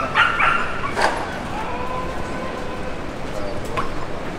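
Two or three short, high yelps in quick succession, like a small dog yapping, over steady street noise. A sharp knock comes about a second in, then a faint steady tone for a couple of seconds.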